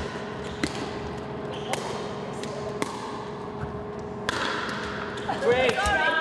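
Pickleball paddles striking a plastic pickleball in a rally, a sharp hollow pop like a ping-pong ball about once a second. Players' voices come in near the end.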